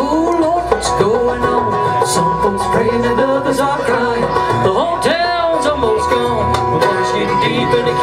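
Live bluegrass band of fiddle, banjo, mandolin, acoustic guitar and upright bass playing a song together.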